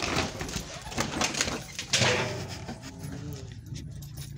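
Puppies on leashes moving about, with rustling and clinking from the leashes and handling, and a faint dog whine.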